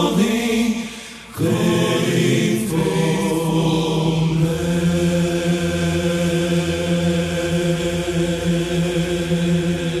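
Four-part men's choir (TTBB) singing. After a short break about a second in, the voices hold one long sustained closing chord.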